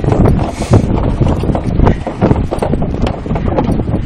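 Hoofbeats of a walking horse on a snow-covered track, with wind buffeting the microphone.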